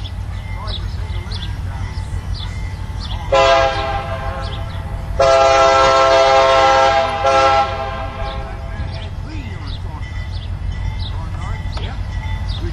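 CSX SD40-2 diesel locomotive approaching with its EMD two-stroke V16 engine rumbling steadily, sounding its horn: a short blast about three seconds in, then a long blast of over two seconds about five seconds in.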